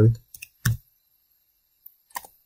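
A few short clicks of computer keyboard keys in the first second as a dimension value is typed, then near silence until a faint click near the end.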